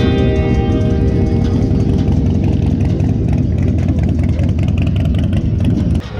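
Several motorcycle engines running at low revs in a deep rumble, with guitar music fading out over the first couple of seconds.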